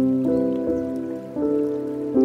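Slow, soft piano playing held notes, a new note or chord every half second or so, over the steady trickle of running water from a bamboo water fountain.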